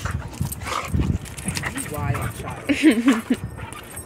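Excited pit bull whining in short, wavering bursts about two to three seconds in while jumping up on a person, over low rustling and bumps from the dog being held.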